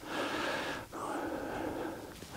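A person's breathing close to the microphone: two long breaths, with a short break about a second in.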